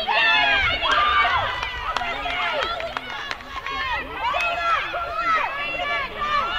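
Several high-pitched voices shouting and calling out over one another, with no single voice standing out.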